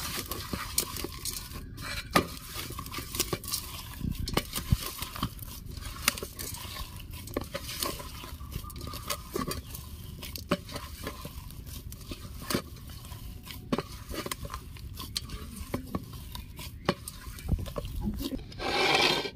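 A bare hand kneading and squeezing mashed potato filling with fried onions in a stainless steel bowl. Soft mushing with irregular knocks and scrapes of the fingers against the metal.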